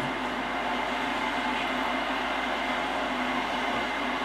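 Steady, even background noise with no distinct events, at a moderate level.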